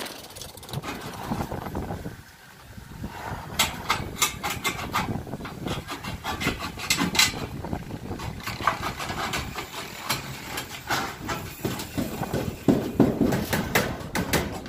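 Aviation tin snips cutting thin metal ridge roll: a quick, irregular run of crisp snips and metallic clicks, thickening about three and a half seconds in.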